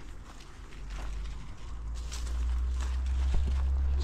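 Footsteps on dry soil, with a low rumble on the microphone that grows louder from about a second in.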